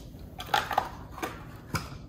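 Metal measuring spoon clinking against a stainless-steel mixing bowl of flour as a teaspoon of baking powder is tipped in: a few light clicks spread across about two seconds.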